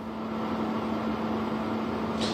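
Steady outdoor background noise with a constant low hum underneath and no distinct events.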